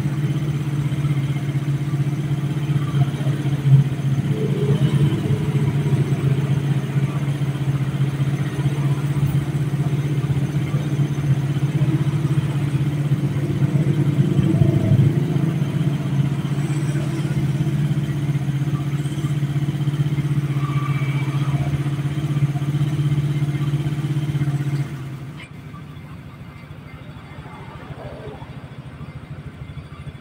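An engine running steadily at idle, then cutting off about 25 seconds in.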